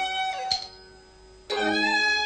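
Teochew opera orchestra playing, with strings over sharp beats about half a second apart. The music breaks off about half a second in, drops to a low level for about a second, and comes back in.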